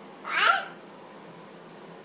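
A toddler's single short, high-pitched squeal about half a second in.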